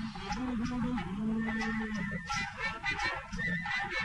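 Instrumental interlude of an old Tamil film song: a low melodic note wavers briefly, then is held for about a second, followed by a busier rhythmic passage in the second half.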